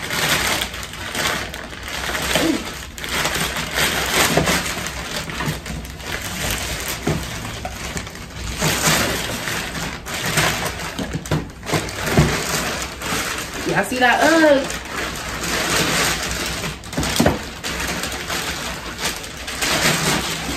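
Plastic shipping mailer bag crinkling and rustling as it is opened, with a cardboard shoe box pulled out and handled, giving a few sharp knocks.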